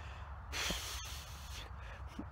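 A man snorting out a breath through his nose, a short breathy exhale from about half a second in, over a low steady rumble.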